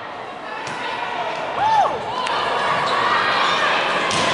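A volleyball rally in a reverberant gym: a few sharp hits of the ball on players' arms and hands, with short calls from the players. A mix of crowd voices builds over the second half.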